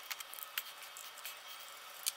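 Faint handling noise at a workbench: a few light clicks and taps as small parts are picked up and set down on a cutting mat.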